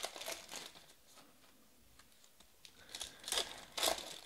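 Foil wrapper of a 2020 Panini Prizm Draft football card pack crinkling as it is handled. After a short lull in the middle, louder crinkles come near the end as the pack is torn open.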